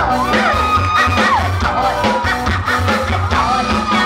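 Live band playing, with a drum kit keeping a steady beat under a singer's voice holding long notes that slide in pitch.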